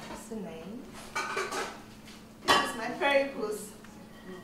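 Cookware and utensils clinking and knocking at a kitchen counter, with a sharp ringing clink about two and a half seconds in.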